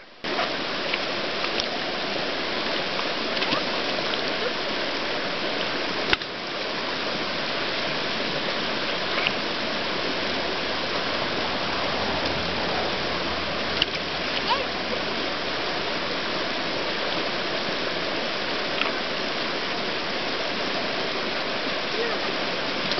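Shallow, fast-flowing river rushing steadily over stones, with a few short clicks, the sharpest about six seconds in.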